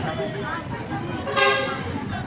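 A vehicle horn gives one short honk about one and a half seconds in, over the chatter of voices.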